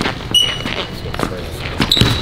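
A basketball being dribbled on a hardwood gym floor, a bounce about every half second, with a short high sneaker squeak about a third of a second in.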